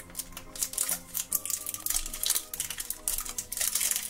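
Printed plastic wrapper crinkling and crackling as it is peeled off a plastic surprise egg: a rapid, irregular run of sharp crackles.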